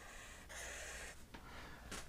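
Felt-tip marker drawing on flip-chart paper: a faint scratchy stroke lasting about half a second, starting about half a second in, over a low steady room hum.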